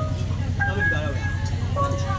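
Burmese hsaing waing ensemble playing: a steady, rapidly repeating low drum pulse under a high melody line of held notes and slides.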